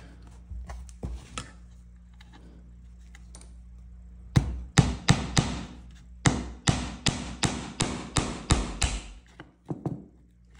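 Hammer tapping small 4d nails, their heads clipped off, into a pine board: a dozen or so light, sharp strikes, about three a second, starting about four seconds in, after a few faint handling clicks.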